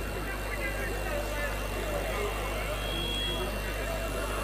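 A pause between speakers: a steady low electrical hum from the microphone and sound system, under faint background voices.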